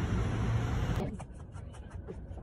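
Loud steady outdoor noise with a deep rumble, cut off abruptly about a second in, leaving a quieter ambience with faint scattered clicks.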